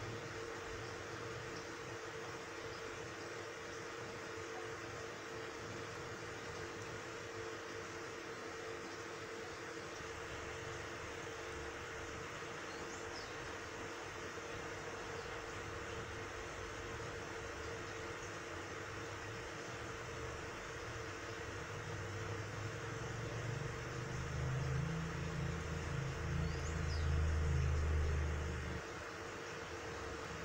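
Steady hiss and electric hum of running aquarium equipment. A louder low rumble builds over the last several seconds and cuts off abruptly just before the end.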